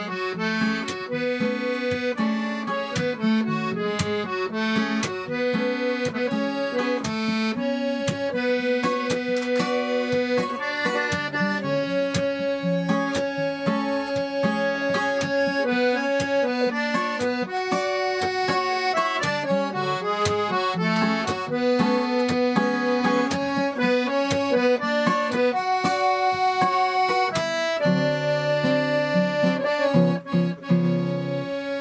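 Live instrumental folk tune on an accordion: a held-note melody over sustained chords and bass, with the lower notes shifting near the end. An acoustic guitar strums along.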